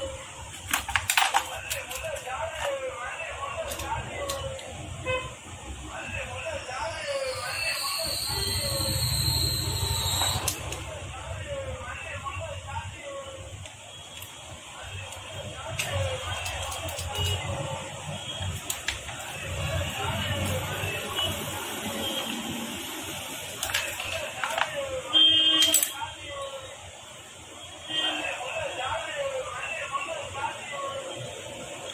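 Voices talking in the background, with small clicks of metal parts being handled. About 25 seconds in, a short loud tone like a vehicle horn sounds.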